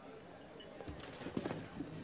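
A few faint, irregular soft knocks in the second half, over quiet room tone.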